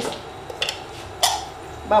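A few soft kitchen handling noises and one sharp click a little past a second in, as the lid is taken off a milk jug.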